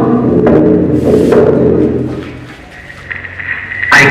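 Unaccompanied group singing trailing off over the first two seconds, followed by a quieter stretch in which a steady high tone comes in near the end.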